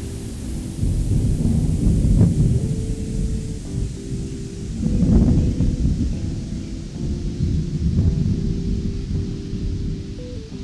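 Thunder rumbling in deep swells, loudest about two seconds and five seconds in, with background music of slow held notes playing over it.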